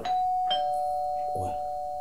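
Two-tone doorbell chime: a higher ding, then a lower dong about half a second later, both ringing on and slowly fading.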